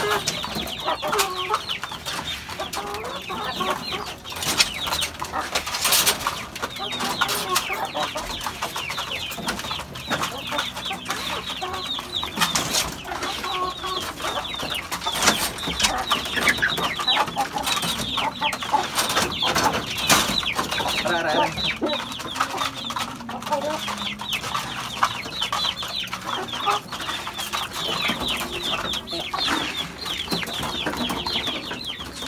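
Many caged chickens clucking and calling continuously at feeding time, with a few louder knocks and rattles as feed is scooped into plastic feed cups.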